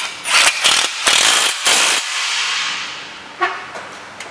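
Milwaukee cordless impact driver hammering bolts into a bracket in four short, loud bursts over about two seconds, followed by a single light click.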